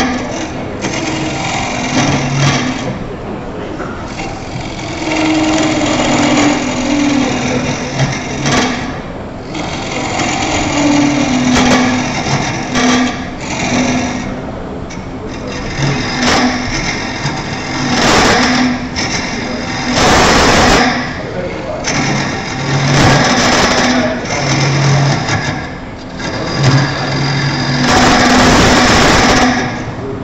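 Wood lathe spinning a bird mouth vase blank while a turning tool cuts into it: a steady motor hum with repeated surges of cutting noise as the tool bites and shavings come off.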